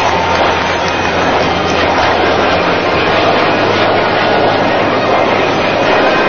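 Loud, steady jet noise from a single-engine F-16 fighter flying a display pass.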